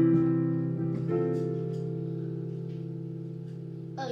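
Digital piano chords. One chord is already sounding and fading. About a second in, a second chord is struck and held, slowly fading until it is let go near the end.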